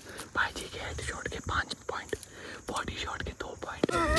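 Faint whispering and low voices, with scattered soft clicks and rustles.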